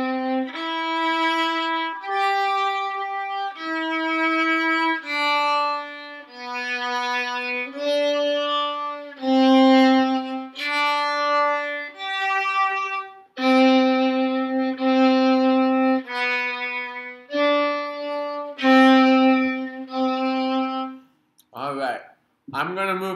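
Solo violin playing a slow sight-reading line of single bowed notes, about one a second, around middle C. The line opens with a C major arpeggio.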